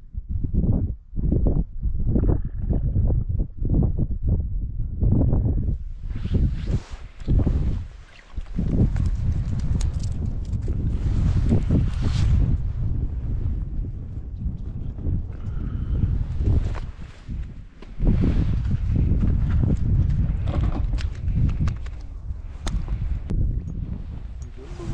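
Footsteps on snow-covered ice, about two a second, for the first several seconds. Then wind buffeting the microphone and clothing rubbing against it.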